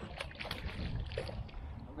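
Water splashing and sloshing at the water's edge as a shot koi carp is hauled in on a bowfishing line, with a few sharp splashes in the first half second and wind rumbling on the microphone.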